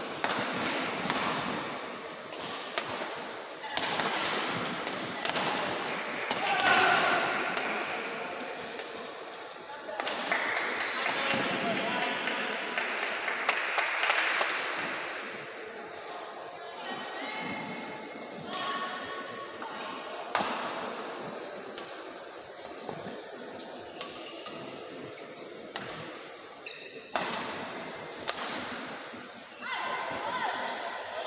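Badminton play in a large hall: sharp, irregular racket strikes on the shuttlecock and short shoe squeaks on the court, with a murmur of voices around the hall.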